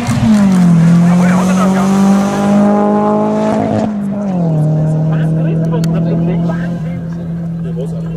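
A drift car's engine held at high revs as the car slides sideways with its tyres squealing. The engine note drops twice, about a second in and again about four seconds in, and holds steady in between.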